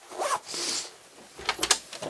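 Short rasping, zip-like handling noises, then a quick cluster of sharp clicks about one and a half seconds in, as a house's front door is unlatched and opened.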